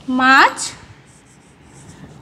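A woman's voice drawing out a single syllable, then a felt-tip marker faintly squeaking and scratching in short strokes as it writes on a whiteboard.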